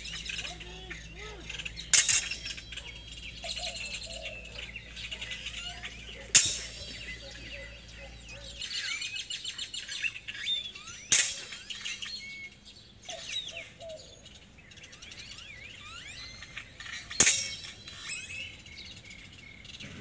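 Longsword blades striking each other in four sharp clashes a few seconds apart, over birds chirping throughout.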